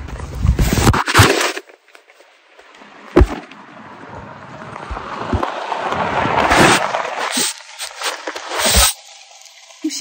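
Phone handling noise, with scraping and crackling, as the phone is hurriedly pushed into a pocket, then a car driving fast along a forest track, its noise swelling over several seconds to a peak and fading, heard with the phone covered.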